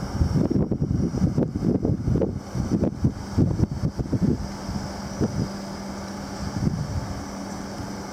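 Wind buffeting the microphone in irregular low rumbling gusts, strongest in the first half and easing after about four seconds, with a faint steady low hum underneath.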